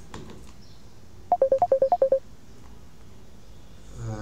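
Background music: a short figure of about ten quick electronic beeps alternating between two pitches, lasting under a second and recurring about every three seconds.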